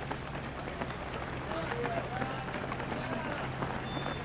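Running footsteps: many pairs of running shoes slapping on asphalt as a group of runners passes, with faint voices and a steady low hum in the background.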